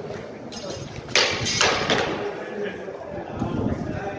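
Wooden singlesticks clacking together, a loud sharp clash a little over a second in followed by two more strikes within the next second, each trailing off in a short echo.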